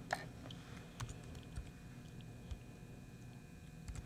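A few faint, sparse computer keyboard keystrokes and clicks, the clearest about a second in.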